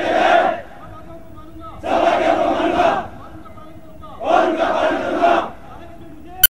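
A body of soldiers shouting a war cry in unison, in long held calls repeated about every two and a half seconds. One call ends just after the start, and two more follow, each lasting about a second.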